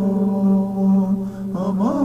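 Soundtrack music: a male voice chanting, holding one long low note over a steady low drone, then sliding up to a higher note near the end.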